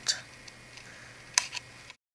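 Small scissors cutting cream cardstock, rounding the corners: a few light snips, the sharpest about one and a half seconds in, with a lighter one just after. The sound cuts off dead just before the end.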